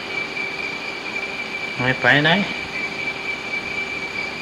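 Old recording of an elderly Thai monk's sermon: one short spoken phrase about two seconds in. It sits over constant recording hiss and a thin, steady high whine that fill the pauses.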